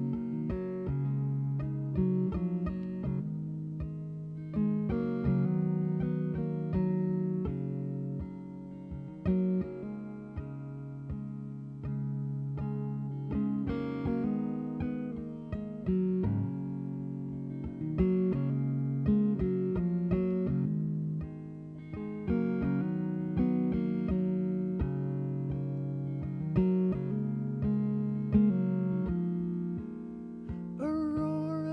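Electric guitar playing a slow instrumental passage of picked notes and chords, a new note or chord struck every second or two.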